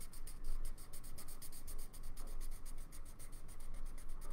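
Marker tip scrubbing on paper in quick back-and-forth strokes, several a second, colouring in a shape.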